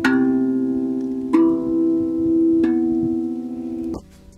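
Steel handpan struck by hand, three notes about a second and a third apart, each left to ring on in long, sustained tones.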